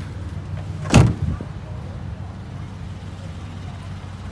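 A single loud thump about a second in, followed at once by a smaller knock, over a steady low rumble.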